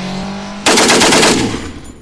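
Motorcycle engine sound effect running steadily, broken about two-thirds of a second in by a loud burst of rapid machine-gun fire that dies away near the end.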